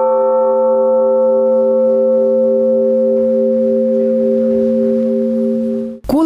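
A 770 kg bronze church bell (the "Blagovestnik") ringing on after a single strike of its clapper: several steady pitched tones, one with a gentle waver, fading slowly.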